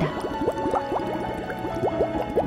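Underwater bubbling sound effect, a quick run of short rising bloops, over soft background music.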